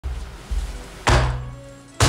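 Dramatic bass-impact hits added in editing: three deep booms, each with a sharp attack and a low rumbling tail that fades. The third, about a second in, is the loudest.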